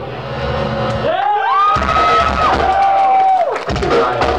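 A crowd cheering as a heavy metal song ends in a club, with one long, high, held tone above it: it rises, holds, steps down and falls away after about two and a half seconds.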